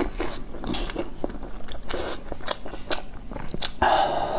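Close-miked eating: chewing and wet mouth clicks as a person eats noodle soup, with a short noisy slurp of noodles near the end.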